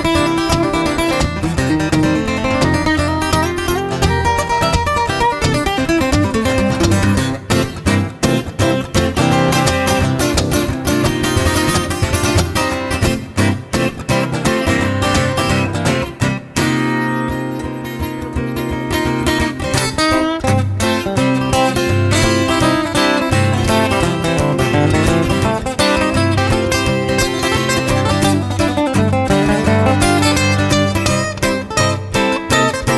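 Two steel-string acoustic guitars playing an up-tempo instrumental break in a folk/bluegrass tune, quick picked notes over rhythm chords. A little past halfway the fast picking drops back for a few seconds to held low chords, then resumes.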